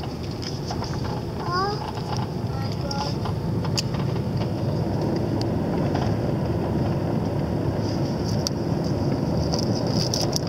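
Car cabin noise while driving: a steady low rumble of engine and tyres on the road, at an even level. A brief short voice sound comes about a second and a half in.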